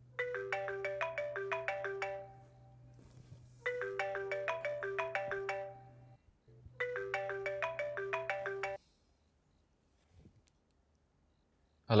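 Mobile phone ringing: a short melodic ringtone tune of quick notes plays three times, then stops before the call is answered.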